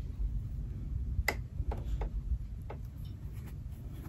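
Fingers separating and handling a stack of pinked-edge cotton fabric squares: a handful of sharp clicks and light rustles, the loudest a little over a second in.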